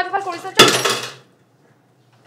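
A sudden loud clatter of dishes and cutlery at a kitchen sink, ringing briefly.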